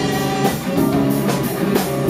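Live rock band playing: electric guitar, bass guitar and drum kit with keyboards, the drums striking steadily under held guitar and keyboard notes.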